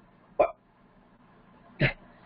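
Two brief wordless vocal sounds from a woman: one about half a second in and another near the end, with faint hiss between them.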